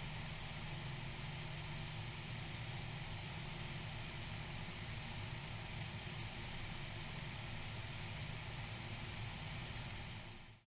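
Single-engine Cessna 172's piston engine and propeller droning steadily in cruise flight, mixed with an even rush of wind over the airframe.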